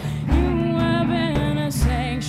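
A woman singing live into a microphone, holding long notes that bend and step down, over instrumental backing with a low bass beat.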